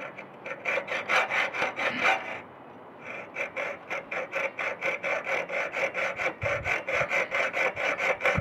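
Piercing saw cutting through metal held in a vise: quick, even back-and-forth strokes, about five a second, with a brief pause about two and a half seconds in.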